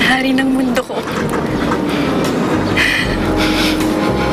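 A love song with a sung vocal plays: the singer holds one note for nearly a second at the start, breaks off briefly, and the song carries on.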